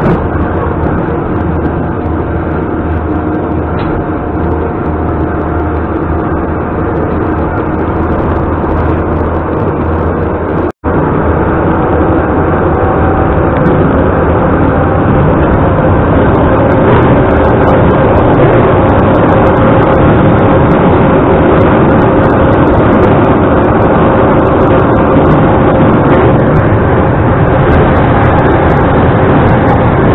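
Metro train running at speed, heard from inside the carriage: steady rolling and motor noise. It cuts out for a moment about eleven seconds in and comes back louder.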